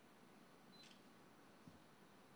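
Near silence, broken once just under a second in by a faint short high beep and a click: a digital camera's focus-confirm beep and shutter.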